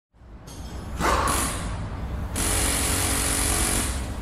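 Logo intro sound effect: a noisy, machine-like whir that builds from silence, swells about a second in, and about two and a half seconds in turns into a steady hiss over a low hum.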